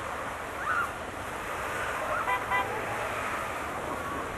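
Steady outdoor wind noise on the microphone with faint distant voices. About two and a half seconds in, a short high-pitched pulsing sound stands out briefly.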